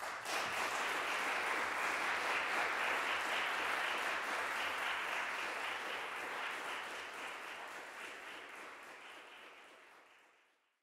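Audience applauding. It starts suddenly, holds steady for about six seconds, then slowly dies away.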